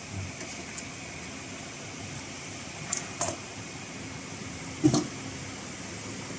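Steady background hum, with a few short clicks and rustles as the stitched sample is handled. Around three seconds in there are two crisp clicks, and a louder soft knock comes just before five seconds.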